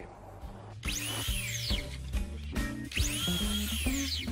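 Sliding compound miter saw cutting cedar fence boards, twice: each time a high motor whine rises quickly and falls away within about a second. Background music plays throughout.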